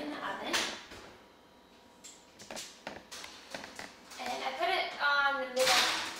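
Oven door opened and a metal baking sheet set onto the oven rack: a few sharp clicks and clanks between about two and a half and three and a half seconds in, and a louder knock near the end.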